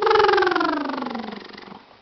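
A woman's drawn-out cooing vocal sound aimed at a baby: one long wordless note that slides down in pitch over about a second and a half, then fades.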